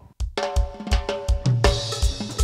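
Live cuarteto band starting a song: drums come in about a quarter second in, keeping a fast steady beat, with held chords and a bass note joining over it.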